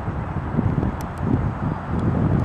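Wind buffeting the camera microphone: an uneven low rumble that rises and falls, with two faint ticks about a second in.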